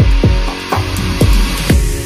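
Background pop song in an instrumental stretch between sung lines: sustained chords over a steady drum beat of about two hits a second.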